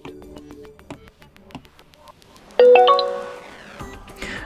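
Quiet background music, then about two-thirds of the way in a loud electronic chime of several ringing tones that fades over about a second.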